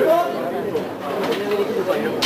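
People talking: voices and chatter from the audience and stage between songs.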